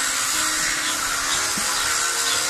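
Steady hiss of background noise with a faint low hum under it, unchanging throughout.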